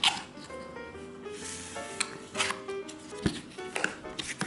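Cardboard box lid and flaps being pulled open and folded back, in several short rustling scrapes, over steady background music.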